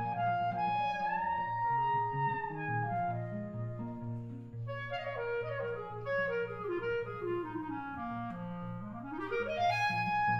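Clarinet playing a fast swing-jazz melody over steadily strummed archtop-guitar chords. It holds long notes at first, runs down in a quick cascade in the second half, and sweeps back up near the end.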